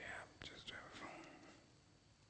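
Faint whispered speech with a few soft clicks among it, trailing off after about a second and a half.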